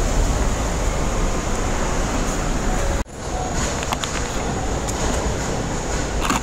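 Steady vehicle and traffic noise with a strong low rumble from a car idling close by. It breaks off for an instant about three seconds in and resumes at a similar level.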